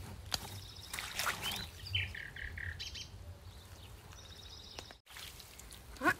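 Birds chirping, with a short run of notes about two seconds in, over soft splashing and rustling as water celery is pulled from a shallow muddy ditch. The sound cuts out briefly about five seconds in.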